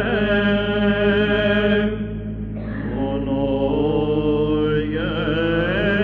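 Byzantine chant: a solo cantor singing a slow, ornamented melodic line in plagal second mode over a steady held drone (ison). About two seconds in the lead voice briefly thins out, then re-enters while the drone holds underneath.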